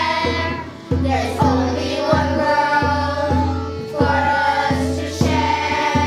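Group of children singing a song in English in chorus over instrumental accompaniment with a steady beat and bass.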